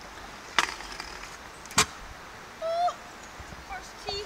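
Two sharp clacks of a stunt scooter's aluminium deck and wheels hitting the pavement about a second apart, followed near the end by a brief high-pitched call.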